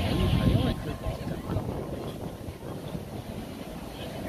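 A person's voice talking briefly in the first second, then a steady low outdoor rumble with no clear source.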